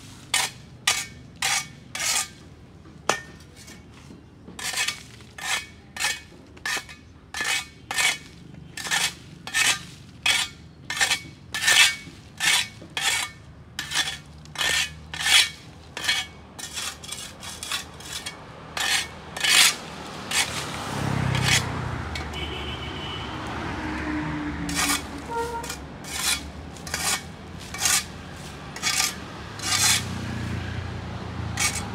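A long-handled plastic dustpan scraped in short, quick strokes over paving stones and dry leaves, about two strokes a second. Between about twenty and twenty-four seconds in, a lower rumbling noise rises under the strokes.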